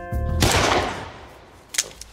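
Radio-play effect of a police service pistol being fired: one shot-like burst that fades over about a second, then a single sharp click near the end. The pistol is rusted and jams.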